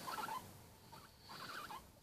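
Faint sounds from a guinea pig, in two short stretches: one at the start and one in the second half.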